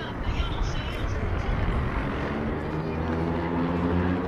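Busy city-square ambience: passersby's voices over a steady background noise, with a low engine hum from a vehicle coming in and growing louder in the second half.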